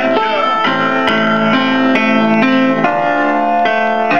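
Keyboard playing an instrumental passage of held notes and chords that change about every half second, with no singing.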